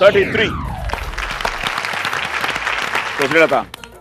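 Studio audience applauding for about three seconds, after a short falling vocal glide at the start; a voice speaks briefly near the end.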